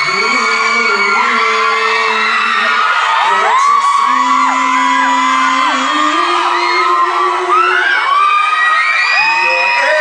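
A concert crowd screaming and whooping in high voices almost without a break, many calls overlapping, over live music with long held notes.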